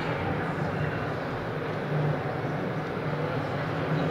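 Steady background din of a large exhibition hall: a constant low rumble of ventilation and crowd noise with faint, indistinct distant voices.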